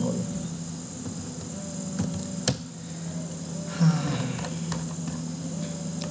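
A few sharp computer keyboard keystrokes, about two seconds in and half a second later, over a steady electrical hum with a thin high whine.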